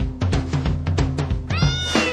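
Jingle music with a fast, steady drum beat. About a second and a half in, a cartoon cat's meow sound effect rises and then falls in pitch over the music.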